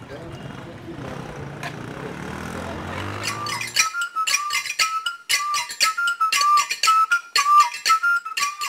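A low rumble grows louder for about four seconds. It then gives way to traditional dance music: a high whistle repeats a short figure of two or three notes over sharp, fast percussion strokes.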